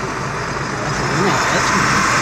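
Car cabin noise in heavy rain: a steady hiss of rain on the car and tyres on the wet road over a low engine hum, growing louder toward the end.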